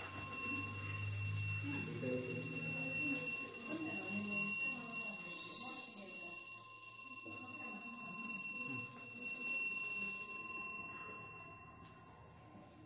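Small battery-powered buzzer of a homemade alarm circuit sounding one steady, shrill electronic tone, which cuts off about ten seconds in.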